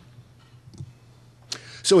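A pause in an amplified lecture: the hall's PA carries a faint steady low hum and a few faint clicks. About one and a half seconds in comes a sharp intake of breath, and a man starts speaking at the very end.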